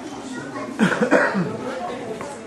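A person coughing three times in quick succession over low background chatter.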